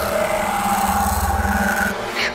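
Film sound effect of a man being engulfed by black liquid and transformed: a loud, rough rushing rasp over a low rumble, starting abruptly and stopping after about two seconds.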